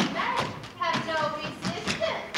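Several thuds on a stage floor as an actor scrambles up from lying flat to a kneel and onto his feet, mixed with short voice sounds.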